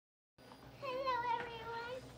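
A young girl's high voice holding one long, slightly wavering note, starting a little under a second in.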